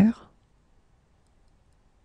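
The last syllable of a spoken French phrase trailing off in the first quarter second, then near silence with only a faint room-tone hiss.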